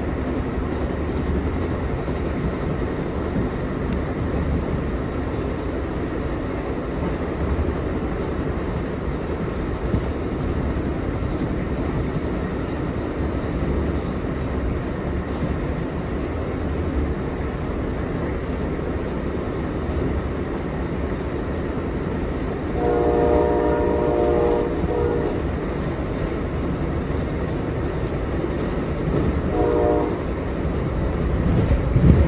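Passenger train riding at speed, a steady rumble of wheels on rail. About two-thirds of the way through, the P40 locomotive's Nathan K5LA five-chime air horn sounds one chord of about two and a half seconds, and another blast begins at the very end.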